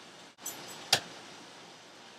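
An egg being cracked against the rim of a bowl: one sharp crack about a second in, with a little light clatter of shell just before it.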